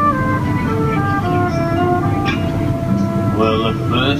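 Small folk band of accordion, trumpet, cello and guitar playing an instrumental phrase of a whaling-song arrangement: a melody in clear stepped notes over sustained lower notes. A steady low background hum runs underneath.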